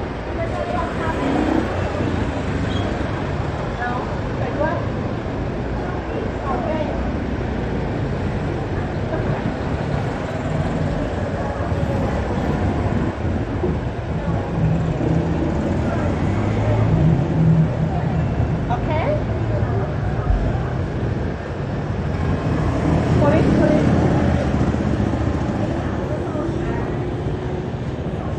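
Street traffic: cars and motorbikes passing at low speed, the engine rumble swelling about halfway through and again later on, with people talking in the background.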